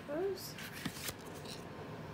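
Cardboard packaging rustling and sliding as a highlighter palette is pushed back into its box, with a few light taps and clicks.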